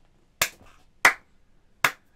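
Three sharp hand claps, unevenly spaced, about a second apart.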